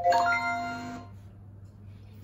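Short chime from the interactive lesson software as it switches pages: a few bright ringing notes together that fade out within about a second.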